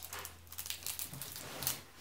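Small kit packet rustling and crinkling in a child's fingers as it is being opened, with a few faint irregular crackles.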